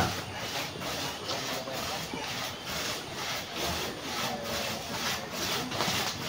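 Hand saw cutting through wood in steady back-and-forth strokes, about two a second.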